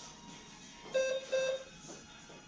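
Two short electronic beeps from a gym interval timer, marking the change between one-minute stations, heard over quiet background music.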